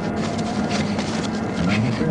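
Steady low hum of the idling police patrol car that carries the dashcam, with faint short knocks mixed in.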